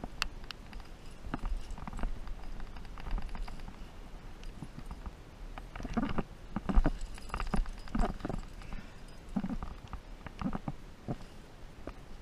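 A rock climber's hands, shoes and rack knocking and scuffing against the rock in irregular bursts as he moves up the crag, with a low wind rumble on the microphone.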